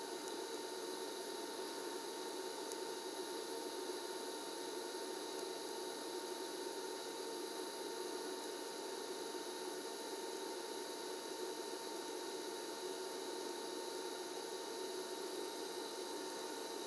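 Quiet, steady hiss of a low-amperage DC TIG arc on thin overlapped steel sheet, run from a small 110-volt inverter welder, with a faint steady high tone underneath.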